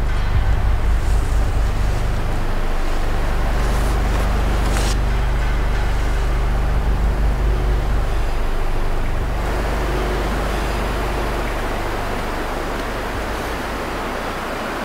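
Pickup truck engine idling: a steady low hum under a constant hiss, easing off slightly near the end.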